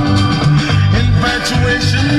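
Music playing loudly on a car stereo, heard inside the cabin, with a steady bass line and beat.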